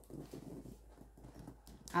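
Faint light knocks and rustling as a gift box packed with bottles, boxed items and crinkle-paper filler is turned around, its contents shifting.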